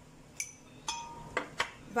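A metal spoon clinking against glass, about four light, sharp clinks, one of them ringing briefly.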